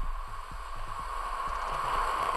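Falcon 9 first stage's nine Merlin 1D engines at ignition and liftoff, heard as a steady rushing noise.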